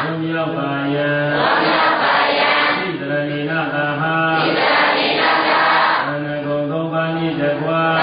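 A Buddhist monk's voice chanting a melodic recitation, holding long notes that step up and down in pitch with short breaks between phrases.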